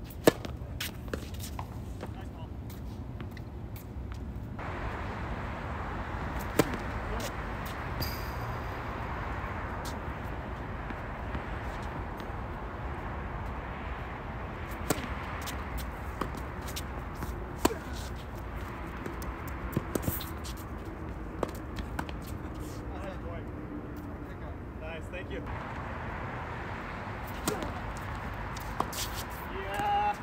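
Tennis rackets striking the ball: a sharp pop from a serve just after the start, then scattered hits and bounces as points are played. Under them runs a steady background rush that comes in a few seconds in and drops away near the end.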